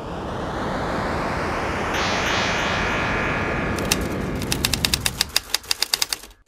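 Animated logo intro sound effects: a swell of noise that rises over the first second and holds steady, then a run of sharp, rapid clicks from about four seconds in.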